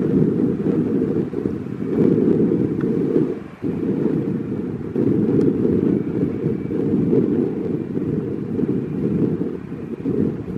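Wind buffeting the microphone: a loud, gusty low rumble that drops away briefly about three and a half seconds in.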